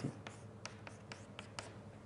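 Writing on a board: a series of faint short taps and scratches as a stroke of writing goes down.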